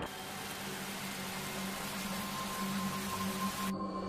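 A steady, even hiss with a low hum underneath; the upper part of the hiss cuts off abruptly near the end, leaving a duller rush and the hum.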